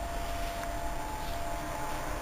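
Steady whooshing hum of a running air conditioner filling the room, with a faint steady high tone underneath.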